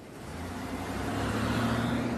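A car engine running as a vehicle drives along the street, its hum getting louder through the first second and a half as it approaches.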